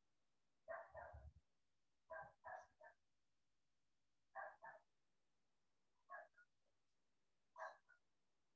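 A dog barking faintly over a video-call line: five short bouts of one to three quick barks, a second or two apart.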